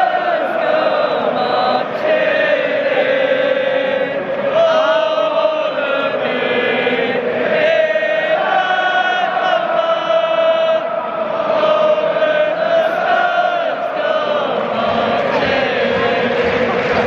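Football supporters' chant: a stadium crowd singing a slow, drawn-out song in unison, with a woman's voice singing along close to the microphone.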